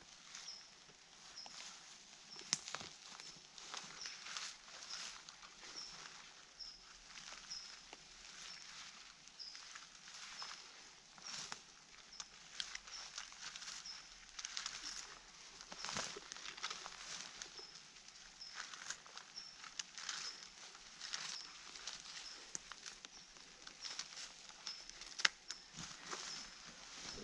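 Hand-held berry-picking scoop combing through bilberry bushes to harvest blueberries: faint rustling of leaves and twigs with irregular light clicks and snaps. A faint high chirp repeats about every three-quarters of a second through the first half.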